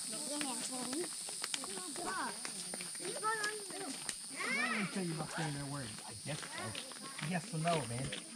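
Indistinct voices of people talking and calling out as they pass, over a steady high-pitched drone in the background.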